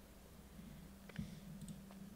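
Faint room tone with a steady low hum, and one soft click about a second in.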